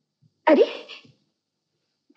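A person's single short startled exclamation, "Arey!", loud and breathy at the start.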